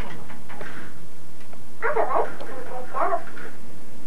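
A baby's voice: two short, high-pitched vocal sounds, about two and three seconds in, after a few light clicks from handling toys.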